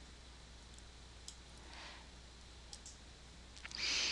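A few faint, scattered clicks of a computer mouse over a low steady room hiss.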